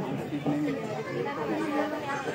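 Indistinct talking: voices without clear words.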